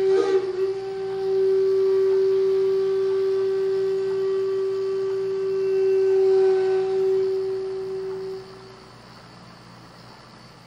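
Jinashi shakuhachi (Zen bamboo flute) holding one long, steady low note, which fades out near the end and leaves a faint hiss.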